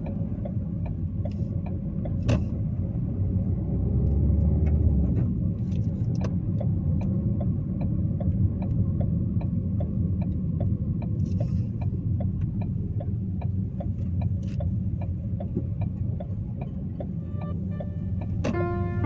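Car driving, heard from inside the cabin: a steady low rumble of engine and tyre noise, swelling deeper for a moment around four seconds in. A light regular ticking runs over it, and there is a single knock about two seconds in.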